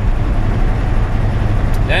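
Semi-truck cab at highway speed: the engine's steady low drone with road noise, heard from inside the cab.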